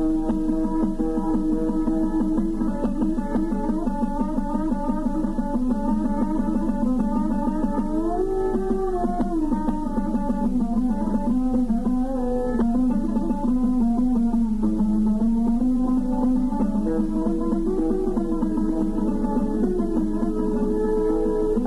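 Instrumental passage of Iraqi maqam Dasht music: a string instrument plays a melody in rapidly repeated notes, with a slow rise and fall in pitch about halfway through.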